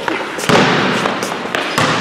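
Several people running on a hard concrete floor: heavy footfalls, with a sharp thud about half a second in and two more near the end, under their untranscribed voices.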